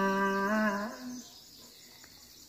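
A singer's voice holding one long note of a Thái folk song from northwest Vietnam. The note dips slightly, rises a little near its close and fades out just over a second in, leaving a quiet pause.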